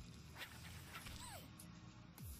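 Quiet soundtrack of an animated fight video: low music with a creature-like vocal sound effect, including a short falling glide about a second in.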